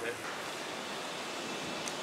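Steady, even hiss of background noise aboard a hybrid solar-electric ferry running on its electric drive, with no motor note standing out from it: the near-silent running of the electric motor.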